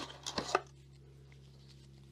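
A few light clicks and taps of small packaging being handled in the first half second, then only a faint steady low hum.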